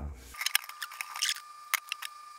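A paper towel crinkling and rubbing on a new stainless steel frying pan as oiled tissue wipes polishing-compound residue from it, with scattered sharp clicks and a faint steady high tone underneath.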